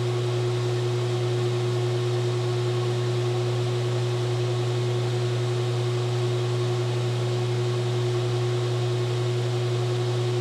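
A 10 kW Dura Power induction heating system running at 95% power: a low, steady hum with a steady higher tone over it and an even hiss, unchanging as the coil heats a steel hub to debraze its carbide bits.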